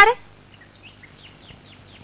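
Faint bird chirps: a string of short, high calls over a quiet outdoor background.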